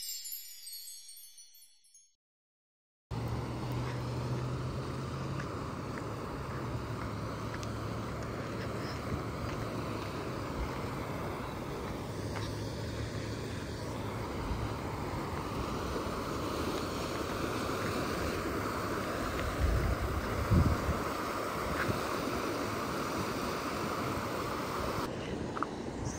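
A short chiming intro jingle fades out, then after a brief silence a flooded river rushes steadily, with a few low bumps about three-quarters of the way through.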